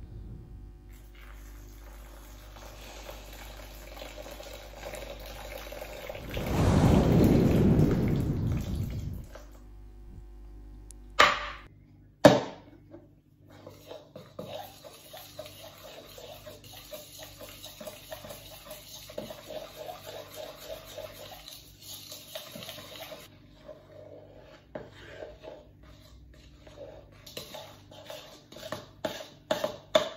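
A loud rushing noise lasts about three seconds, and two sharp knocks follow. Then a table knife cuts and scrapes through crumbly dough in a mixing bowl, making many small irregular scrapes and taps against the bowl.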